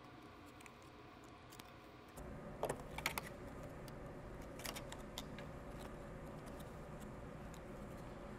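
Thin PET plastic strips cut from a juice bottle crinkling and clicking faintly as fingers bend them. A few sharper crackles come between about two and five seconds in.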